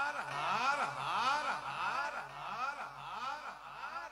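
A male folk singer's voice in a long wordless melismatic run, swooping up and down in pitch about twice a second over a steady low drone, growing quieter toward the end.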